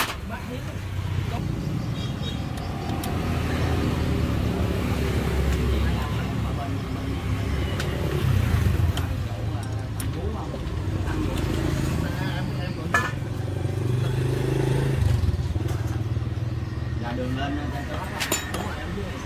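A steady low engine hum, with indistinct voices and a few sharp metallic clicks, the loudest at about 13 seconds.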